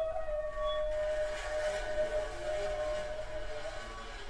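Avant-garde Japanese chamber music for shakuhachi, biwa, flute, harp and tape: one long held wind note, wavering slightly, with a breathy swell of noise about a second and a half in.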